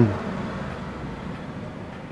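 Steady low room noise of a workshop: a faint even hum with no distinct clicks or knocks.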